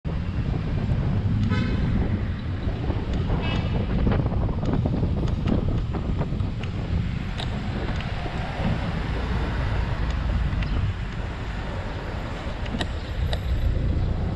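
Wind rushing over the microphone of a camera on a moving bicycle, with city traffic alongside. Two short tooting tones come through, about a second and a half in and again two seconds later.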